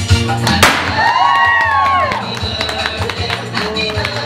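Background music with a steady beat and heavy bass. About half a second in, a single sharp pop, fitting a confetti popper going off, is followed by high pitch glides that rise and fall.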